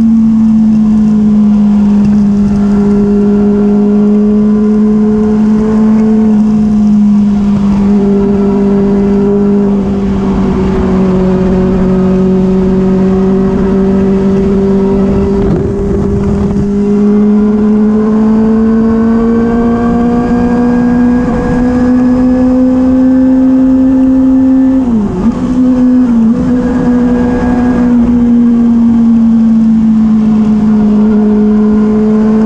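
Yamaha R6 sport bike's inline-four engine running at steady high revs, heard from the rider's seat as a loud, even drone. Its pitch climbs slowly for a few seconds about two-thirds of the way through, then drops sharply for a moment near the end before settling back.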